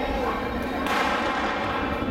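A single sharp crack from the starter's signal about a second in, starting a sprint race, over steady chatter from the crowd.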